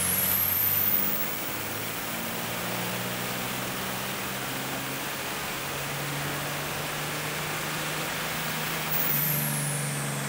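Turbocharged VP44 Cummins 5.9 inline-six diesel making a full-load dyno pull through a four-inch MBRP exhaust with an SMB intake. The engine note climbs slowly as rpm rises. A high turbo whistle rises in the first second and falls away again near the end as the pull ends.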